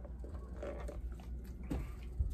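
Soft mouth sounds of a person eating and drinking: sipping a drink through a plastic straw and chewing, with a few small wet clicks.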